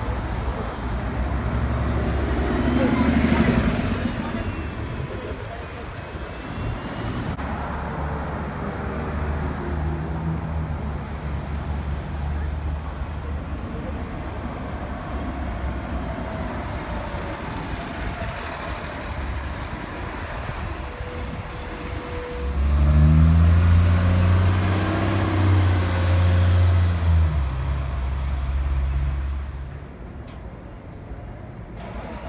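MBTA transit bus engines. One bus passes close a few seconds in, a low engine hum runs through the middle, and about three-quarters through a bus engine revs up loudly as it pulls away, then eases off near the end.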